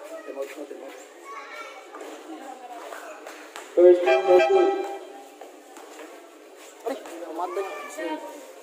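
Players and spectators talking and calling out, with one loud, drawn-out shout close to the microphone about four seconds in.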